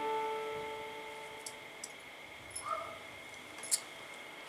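The last chord of the song's guitar accompaniment ringing out and fading away over the first second and a half. Then come a few faint clicks and a sharper, louder click near the end, from the camera being handled as it is reached for.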